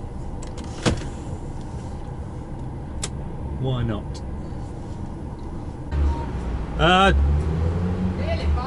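DAF truck diesel engine idling, heard from inside the cab, with a couple of sharp clicks in the first few seconds. About six seconds in the engine note rises and gets louder as the truck pulls forward.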